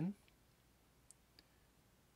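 Near quiet room tone with two faint, brief clicks about a second in, a few tenths of a second apart.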